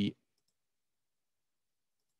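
The end of a spoken word cut off sharply, then near silence with a faint click about half a second in, typical of a computer mouse click advancing a slide.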